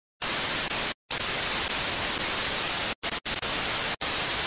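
Analogue TV static: a loud, even hiss of white noise, broken by a few brief dead-silent drop-outs about a second in and again around three seconds in.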